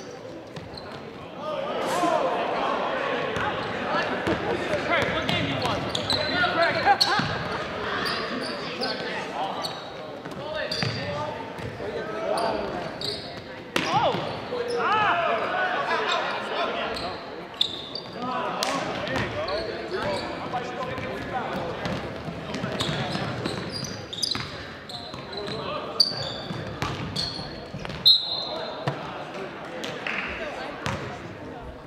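Basketball game in a gym: many spectators' voices talking and calling out, with sharp knocks of a basketball bouncing on the hardwood court, all echoing in the hall. The voices swell about a second and a half in.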